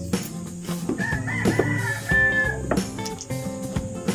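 Music with a steady beat playing throughout, and a rooster crowing over it about a second in, one wavering call lasting under two seconds.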